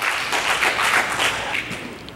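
Congregation clapping briefly, the applause fading out over about two seconds.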